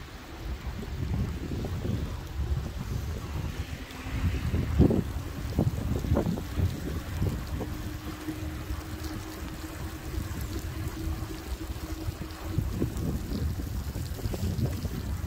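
Wind buffeting the microphone of an e-bike rider in motion, with the hiss of tyres on a wet road and a few bumps around five to six seconds in. A faint steady hum joins about four seconds in and stops a little before the end.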